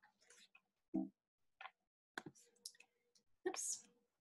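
Faint, scattered clicks and a short breathy sound picked up by a computer microphone, with a brief hummed 'mm' about a second in.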